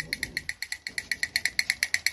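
Battery-powered drumming toy figure tapping its little drum in a rapid, even run of clicks, about seven a second.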